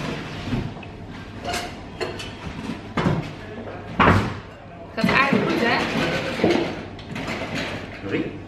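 Voices talking, with two sharp knocks about three and four seconds in.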